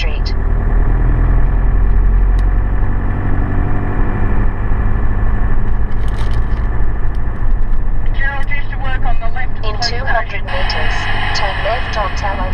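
A vehicle driving with a steady low engine and road drone. Voices come in over it in the last few seconds.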